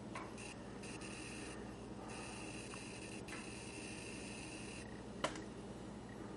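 Faint pure-tone audiometer test tone leaking from headphones, switched on and off in three presentations of about half a second, half a second and nearly three seconds, in a quiet room. A sharp click comes about five seconds in.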